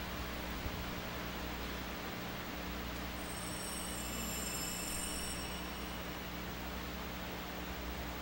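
Quiet room tone through the church's microphone system: a steady hiss with a low electrical hum. Faint high ringing tones come in about three seconds in and fade a few seconds later.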